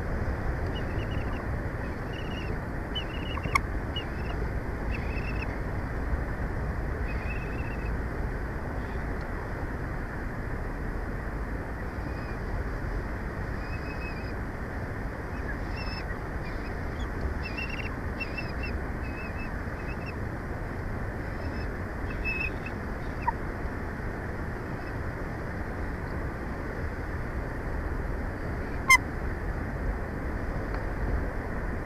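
Steady outdoor rumble and hiss on the nest cam's microphone, with faint short bird calls scattered throughout. There are two sharp clicks, one early and one near the end.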